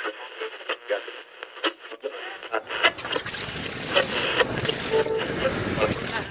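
A tinny, radio-like voice, as on an old broadcast recording, then from about three seconds in a louder, steady rumbling noise that fills the low end joins under it.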